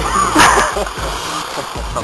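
A person cannonballing feet-first into a swimming pool: one loud splash of water, loudest about half a second in, then the spray settling.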